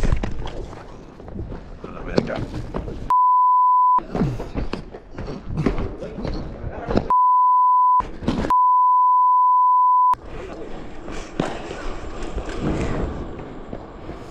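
Censor bleep: one steady high pure tone, sounding three times (about a second, about a second, and about a second and a half long) and fully replacing the original audio, with agitated voices and scuffling sound between the bleeps.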